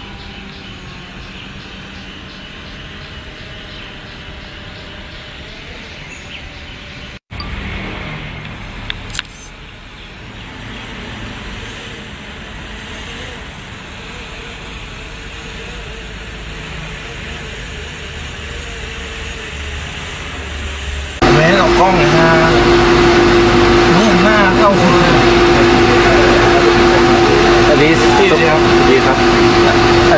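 Faint outdoor ambience with a low, even background noise, cut off for an instant about seven seconds in. About two-thirds of the way through, a loud, steady machine drone with a constant hum starts abruptly, with people talking over it.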